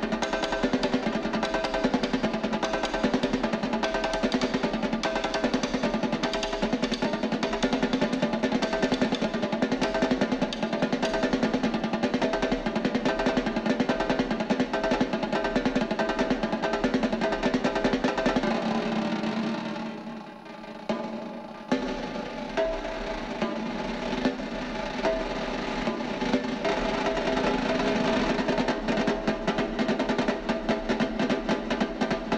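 Three snare drums played together with sticks in fast, dense strokes and rolls. The playing drops to a softer passage for a second or two about two-thirds through, then returns to full strength.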